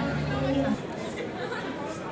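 Indistinct talking and crowd chatter echoing in a large hall; one nearby voice is loud for the first moment and stops before a second in, leaving the babble of the crowd.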